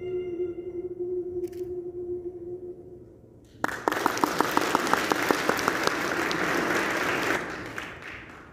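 A long held final note fades away, then audience applause starts about three and a half seconds in, lasting about four seconds before dying away.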